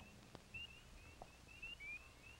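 Near silence with faint bird chirping: short, high, upward-gliding chirps repeating irregularly several times a second.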